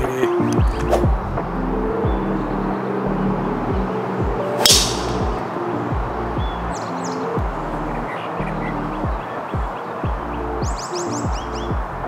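Background music with a steady beat throughout; about five seconds in, a single sharp crack of a golf driver striking the ball off the tee.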